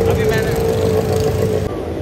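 Road traffic with motorcycles passing, a steady engine drone over a low rumble, with voices mixed in. It cuts off abruptly near the end.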